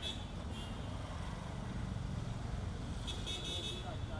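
Steady low rumble of city street traffic, with a brief high-pitched vehicle horn at the very start and a longer one about three seconds in.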